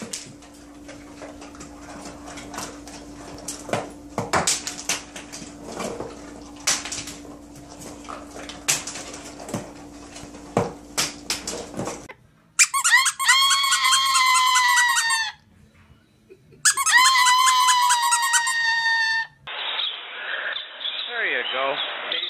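A parrot giving two long, loud, high calls held at a steady pitch, each about two and a half seconds, with a brief pause between. Before them come scattered clicks over a steady low hum.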